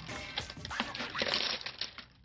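Plastic window-tint film crackling and crinkling as it is handled and its clear backing layer is pulled away, over background music.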